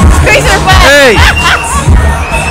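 Loud dance music with a heavy, steady bass beat over crowd babble and talk, with one high voice rising and falling in pitch about halfway through.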